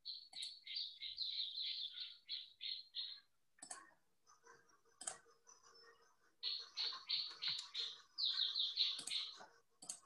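Birds chirping in runs of short, repeated high notes, about three a second, broken by a few sharp clicks.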